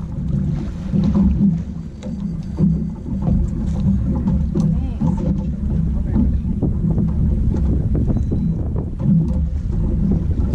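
Boat on open water: a steady low noise of wind and waves against the hull, swelling and easing, with scattered small clicks and knocks.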